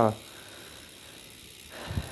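Novatec D792SB rear hub freewheeling as the rear wheel coasts, its freehub pawls giving only a faint, even ratcheting buzz. The sound is muted, which the owner puts down to heavy grease inside the freehub body.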